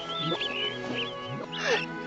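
A cartoon soundtrack played backwards: sustained orchestral music under many short, high squeaks from a swarm of field mice, with a brief swooping sound, the loudest moment, near the end.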